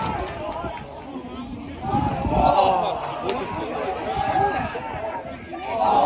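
Football crowd in the stand: spectators' voices and shouts, swelling about two seconds in and again at the end.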